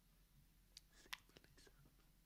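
Near silence: a faint low hum with a few soft clicks about a second in.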